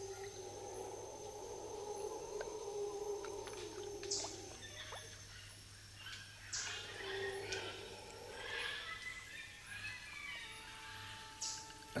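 Quiet marsh soundtrack: faint, wavering low tones held for a few seconds at a time, with short high chirps about every two to four seconds.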